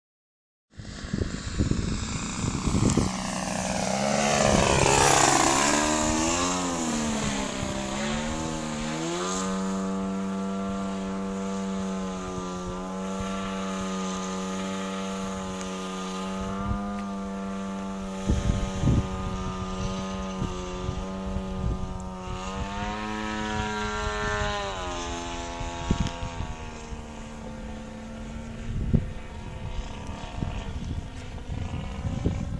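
Radio-control aerobatic plane's DLE 30cc single-cylinder two-stroke petrol engine and propeller in flight. The pitch falls steeply over the first several seconds, wavers with throttle, then holds a steady note, rising briefly and dropping back about three-quarters of the way through. Occasional low thumps come in toward the end.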